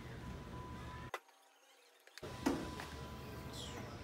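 Faint background music over workshop room tone, with a single sharp click about a second in followed by a second of dead silence.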